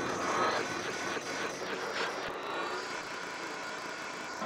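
Electroacoustic music made from frog calls processed in Kyma: a dense, churning texture with rapid pulses in the first two seconds, settling into a steadier, slightly quieter wash.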